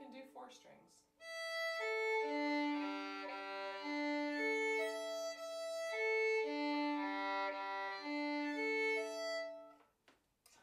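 Violin played with slurred string crossings, the bow rocking back and forth between two adjacent strings so that two notes alternate smoothly without a break. The playing begins about a second in and stops just before the end.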